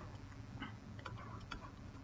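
Faint, scattered light ticks of a stylus tapping and drawing on a pen tablet, over a faint low hum.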